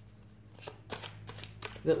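A deck of oracle cards being shuffled by hand: a run of quick, irregular card flicks and snaps starting about half a second in. A voice starts again near the end.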